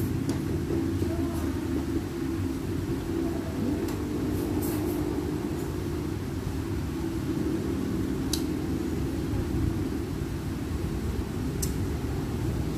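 Steady low rumble of background noise, with a few faint clicks now and then.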